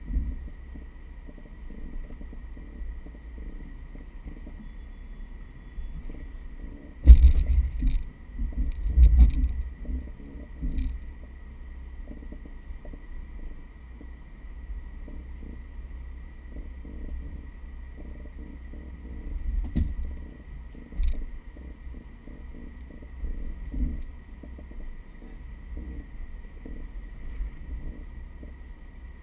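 Mercedes G320 crawling slowly off-road: a low, steady rumble with several heavy thumps, the loudest a cluster about seven to ten seconds in and a few single ones later.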